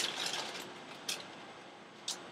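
Faint rustling handling noise fading away, with one short click about a second in, as kitchen things are handled.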